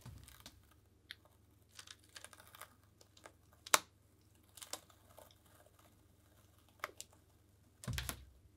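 Faint scattered ticks and light crinkles of a stencil being handled and peeled off a canvas of tacky acrylic paint, with one sharper click a little before four seconds in.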